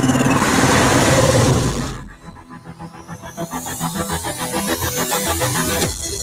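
Cinematic trailer soundtrack: a loud rushing sound effect for about two seconds that cuts off suddenly, then a pulsing electronic beat with a sweep rising in pitch, building toward the end.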